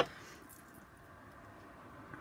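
A single sharp plastic click right at the start as stamping supplies are handled, then faint rustling of a clear acrylic stamp block being moved and positioned over a paper label sheet.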